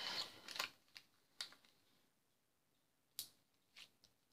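A rustle of paper at the start, then a few sharp, quiet clicks at irregular intervals, two of them close together near the end: a small craft paper punch snapping shut as it punches out small paper hexagons.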